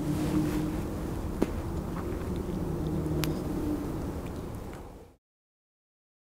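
A vehicle engine running with a steady hum, with a couple of faint clicks over it; the sound cuts off abruptly about five seconds in.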